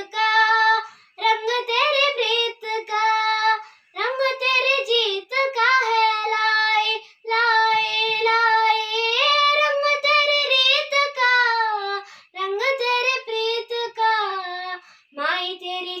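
A young girl singing unaccompanied in a high, clear voice, in long held phrases broken by short breaths.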